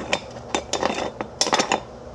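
Black stovetop moka pot being screwed together by hand: the metal top chamber scrapes and clicks on the base's threads in a string of short metallic clicks, bunching up near the end.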